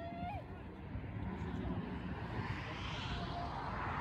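A short distant shout at the very start. A rushing noise then swells over about two seconds and fades near the end, over a constant outdoor rumble.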